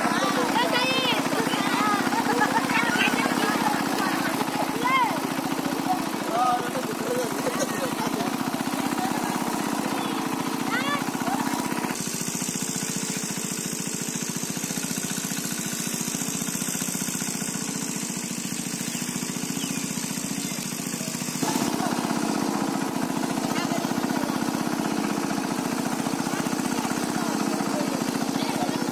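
A small engine running steadily, with voices calling over it during the first part. From about 12 s to about 21 s the engine sound drops back and a steady high hiss takes its place, then the engine sound returns.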